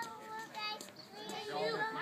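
High-pitched children's voices calling and chattering in the background, several short bursts over the two seconds.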